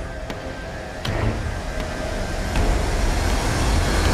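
A low, steady rumble that grows louder from about a second in, with a few faint clicks over it.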